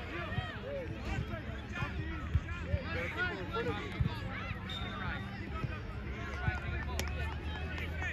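Overlapping distant voices of spectators and young players calling out across a youth soccer field, no single speaker clear, over a steady low rumble. A single sharp click comes near the end.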